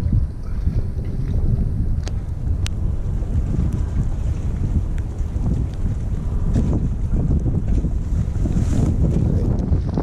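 Wind buffeting the microphone, a loud, uneven low rumble that runs on without a break.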